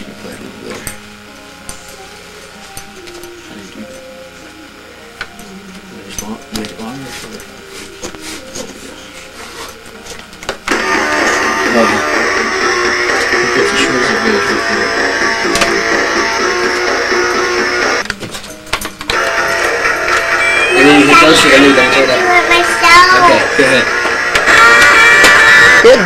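Battery-powered toy electric guitar playing loud built-in rock guitar sounds. The music starts suddenly about ten seconds in, drops out briefly, then returns with notes bending up and down near the end.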